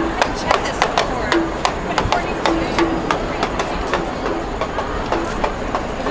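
Handheld pans or pot lids being beaten with sticks: a quick, uneven run of sharp metallic clacks, several a second, some ringing briefly, over the voices of a marching crowd.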